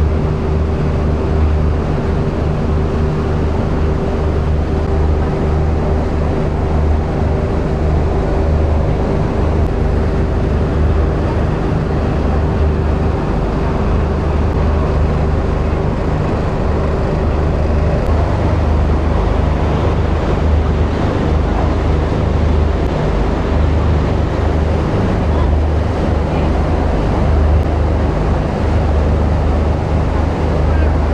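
A river cruise boat's engine running steadily at cruising speed, a low even drone with a faint higher whine that fades about halfway. Water rushes in the churning wake and wind buffets the microphone.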